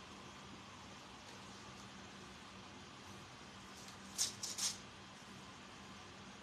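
Paper rustling in three quick bursts about four seconds in as an envelope is opened by hand, over a faint steady low hum in the room.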